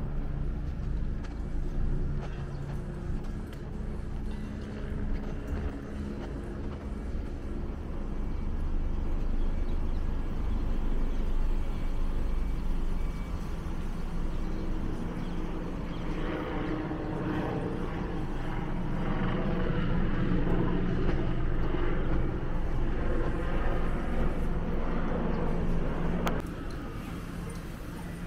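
Motor-vehicle engine noise on a city street: a steady low engine hum that grows louder about two-thirds of the way through and stays loud.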